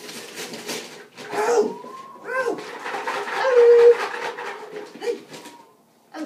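Golden retriever whining in a few drawn-out high tones, over the rustle and tearing of wrapping paper.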